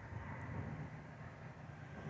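Quiet outdoor ambience: a faint, steady low rumble with no distinct events.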